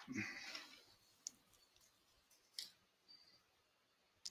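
Near silence with a few faint, isolated clicks, about one and a half seconds apart, after a short soft noise at the start.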